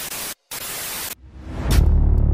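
Television static hiss as a glitch transition effect, cut by a brief dropout about a third of a second in and stopping a little after one second. A low, steady sound swells in near the end.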